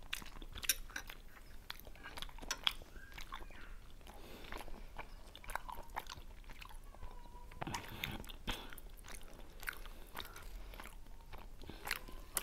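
Close-miked chewing of soft potato-and-mushroom dumplings by two people, full of small wet mouth clicks and smacks scattered irregularly throughout.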